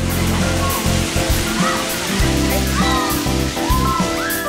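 Background music over the steady hiss and splash of splash-pad fountain jets, with short voices calling out now and then.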